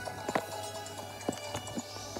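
A few light, irregular knocks and clicks of the recording phone being handled, over faint DVD menu music from a portable DVD player and a low steady hum.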